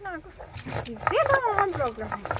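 A dog whining: a quick falling yelp at the start, then a longer whine about a second in that rises and falls. Under it are the knocks and scraping of a stone roller grinding spices on a sil batta.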